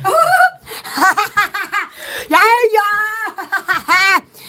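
A young woman laughing in quick short pulses, then letting out one long, high-pitched squeal held for about a second around the middle.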